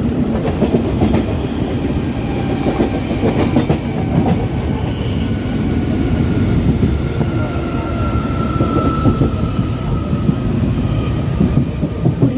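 Electric multiple-unit suburban train with Medha traction electrics running at speed, heard from inside the coach: a steady rumble with wheels clattering and rattling over the track. A faint whine from the traction motors comes in around the middle.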